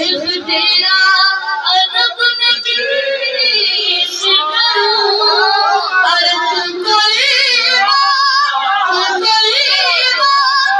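A boy singing a manqabat, a devotional praise song, into a microphone, in a high voice with long, wavering held notes.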